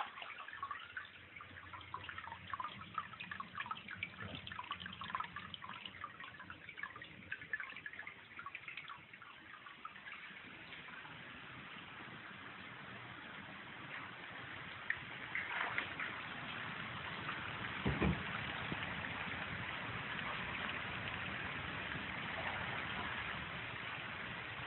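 Water dripping and trickling in a crawl space, many small quick drips at first, giving way to a steadier hiss. One knock about eighteen seconds in.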